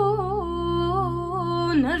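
A woman singing a traditional Armenian folk song solo, in an ornamented, wavering melodic line, over a steady low drone accompaniment.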